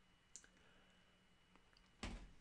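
Near silence: room tone, with one faint, short click about a third of a second in.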